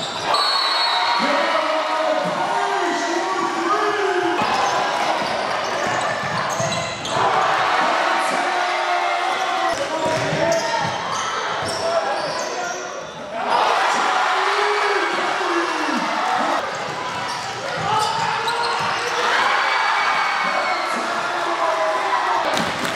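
Basketball game in a gymnasium: a basketball bouncing on the hardwood court amid shouting voices of players and spectators, echoing in the large hall, with a swell of voices about halfway through.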